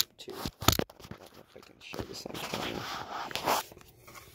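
A few sharp plastic clicks about half a second in, then softer rubbing and scraping, as fingernails work at the small plastic plug of a laptop's internal speaker cable to pull it out of its socket.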